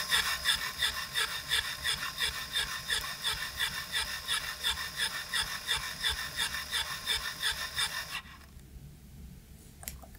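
Beamex ePG electric pressure pump running with a rapid, even pulsing as it raises the pressure toward the 5 bar calibration point. The pump stops abruptly about eight seconds in, and a faint click follows near the end.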